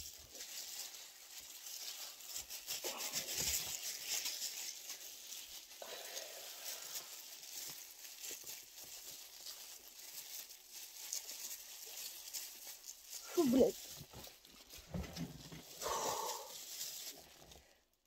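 Plastic-gloved hands rubbing and squishing hair dye through hair, a soft, steady crinkling hiss. A short voice sound cuts in about two-thirds of the way through.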